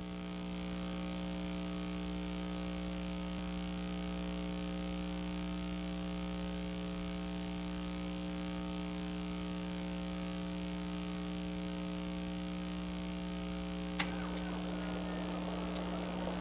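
Steady electrical mains hum with a buzz of evenly spaced overtones in the broadcast audio, unchanging throughout, with a single click about 14 seconds in.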